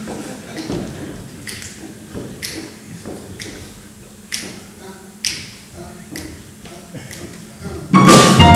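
Finger snaps counting off the tempo, about one a second, just before a jazz band comes in, with low murmured voices between the snaps.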